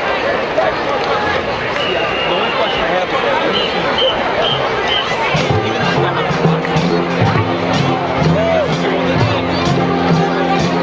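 Crowd chatter in a stadium, then about five seconds in a marching band starts playing: held low brass chords with regular drum and cymbal hits.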